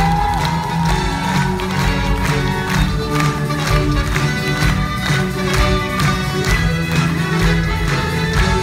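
Live string orchestra playing, violins carrying the melody over a steady beat of about two strokes a second.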